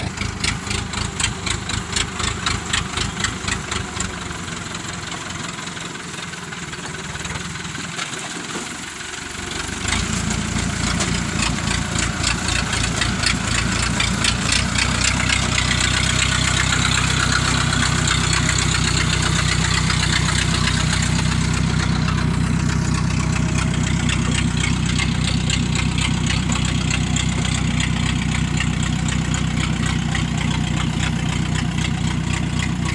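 Engine of a small tracked rice-hauling carrier (xe tăng bò), loaded with sacks of rice, running with a fast, even chugging beat. It is quieter and thinner for a few seconds, then from about ten seconds in runs louder and deeper, staying steady to the end.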